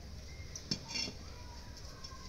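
A kitchen utensil clinking against a clay cooking pot of boiling vermicelli: a sharp click about three quarters of a second in, then a couple of short ringing clinks, over a low steady rumble.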